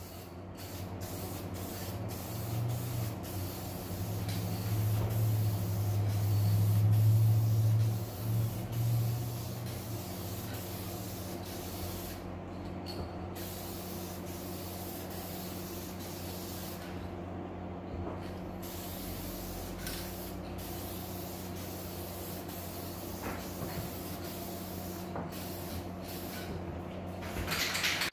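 Aerosol can of Dupli-Color vinyl and fabric coating spraying in steady hissing passes, with brief pauses between strokes. A low hum swells for a few seconds near the start of the spraying.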